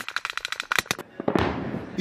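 A rapid, irregular run of sharp cracks of gunfire and blasts through the first second, then a heavier bang about a second and a half in, with a trailing rumble.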